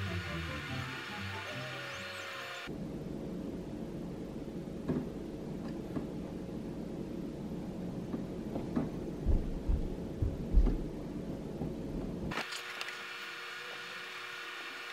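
Background music for the first few seconds and again near the end. Between them is a stretch of room sound with rustling and a few low thumps, the loudest about ten seconds in.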